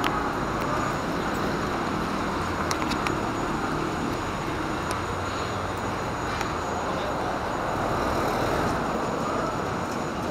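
Steady road traffic noise from a street, an even hum of vehicles with no single event standing out.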